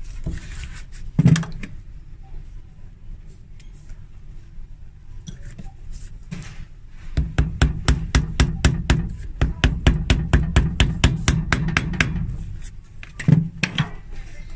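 A hammer tapping the metal pins of new top pieces into stiletto heels: one blow about a second in, then a quick, even run of light taps, about five a second for some five seconds, and a heavier blow near the end.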